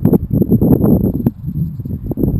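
Wind buffeting a camera's microphone: a loud, uneven low rumble, broken by a few sharp knocks.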